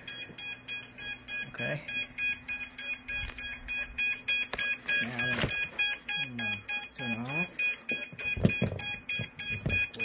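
Racing quad's motors beeping rapidly and steadily, about four high beeps a second. This is the ESC warning that the owner puts down to the throttle not being calibrated yet. A few short sliding sounds come through in the second half.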